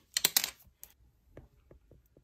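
Light handling clicks: a quick cluster of sharp clicks and crackles in the first half second, then a few scattered softer ticks.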